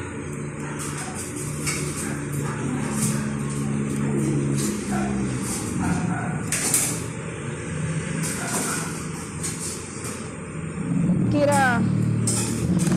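Street sound on a phone recording: a motorcycle engine running, with a few sharp cracks, the gunshots fired from the motorcycle at a parked vehicle. Voices are heard faintly in the background.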